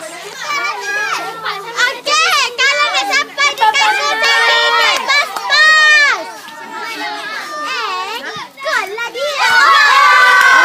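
Children's high-pitched voices shouting and calling out over one another across a football pitch during play. The voices grow into louder, sustained shouting near the end.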